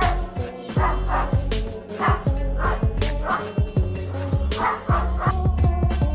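White cockatoo mimicking a dog, giving a string of short bark-like calls, over background music with a steady beat.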